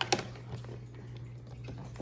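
A couple of sharp clicks right at the start, then faint rustling and tapping as insulated wires and crimp connectors are handled and fitted to a small 12 V battery inside a plastic ammo can. A steady low hum runs underneath.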